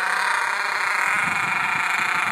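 Ofna LX-1 buggy's Mach 28 nitro engine running steadily with a high-pitched buzz.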